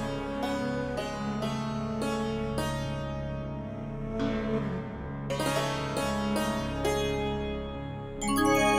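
Background score music: a run of sharply struck notes, about two a second, over a steady low sustained tone.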